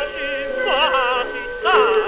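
Early Pathé 78 rpm disc recording of a tenor with orchestra in a tango song: short melodic phrases with wide vibrato over sustained accompanying notes, in the narrow, muffled sound of an old record.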